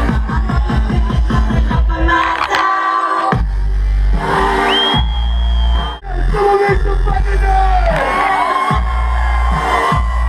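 Loud dubstep played live over a concert sound system: a fast, quickening drum build-up, then about three seconds in a heavy bass drop with gliding synth lines. The sound cuts out for a moment about six seconds in.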